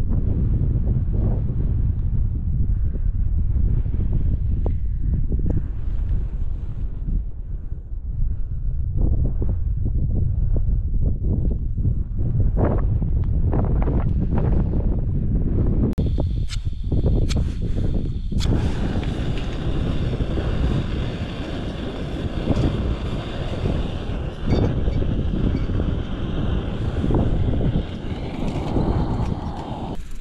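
Wind buffeting the microphone in a steady low rumble. About halfway through, a few sharp clicks, and then a steady gas hiss joins the wind: a small canister camping stove, an MSR Pocket Rocket 2, lit and burning behind an aluminium windshield.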